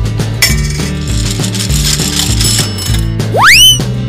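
Cartoon sound effects of a gumball machine over steady children's backing music: a coin clinks into the slot about half a second in, a ratcheting crank mechanism turns, then a loud rising whistling glide near the end as a gumball pops out.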